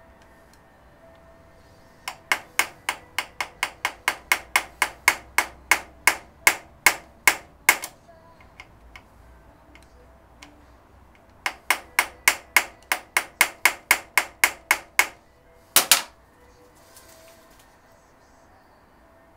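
Hammer tapping a steel rod held on the butterfly screw of a Weber DCOE carburettor's throttle spindle: a run of quick, sharp metallic taps about three to four a second, a pause, a second run, then two harder blows near the end.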